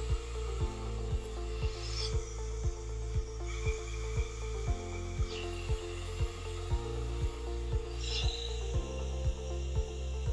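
White noise from an iPhone speaker filtered through 3D-printed acoustic filters; the hiss changes character abruptly every few seconds as different bit patterns are encoded. Under it runs background music with a steady beat and a bass line.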